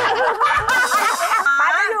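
Women laughing, a stretch of giggling and chuckling mixed with some talk.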